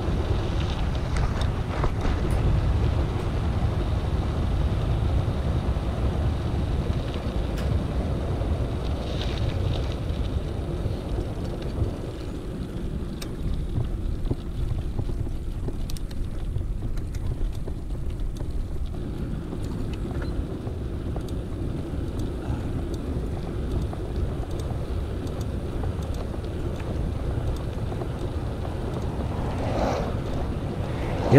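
Wind buffeting an action camera's microphone with tyre rumble from a mountain bike descending a road at speed, easing off around the middle as the bike slows and building again. A few faint clicks come through, from a pedal that has started clicking again.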